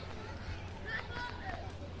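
Busy street ambience: faint, distant voices of people talking over a steady low hum.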